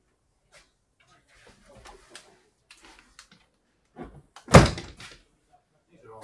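The rear engine lid of a red Lotus being shut, landing with a single loud thump about four and a half seconds in. Faint handling noises come before it.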